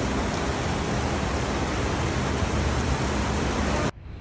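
Heavy rain pouring onto wet pavement: a loud, steady hiss that cuts off abruptly just before the end.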